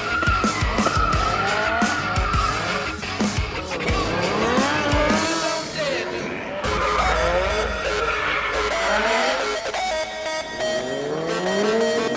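A car engine revving hard, its pitch rising and falling, with tyres squealing as the car skids. Background music plays underneath.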